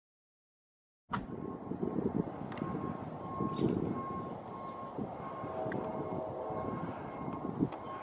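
Silence for about a second, then a steady outdoor background rumble, like distant traffic, with a faint steady high whine over it and a few faint clicks.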